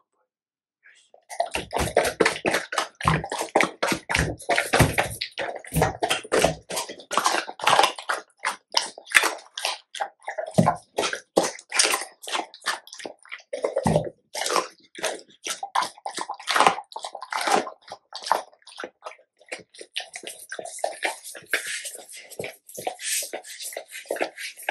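A Labrador retriever eating a raw chicken head up close: wet chewing, smacking and slurping that starts about a second in and carries on in quick irregular bursts. Near the end the dog's tongue laps at the tabletop.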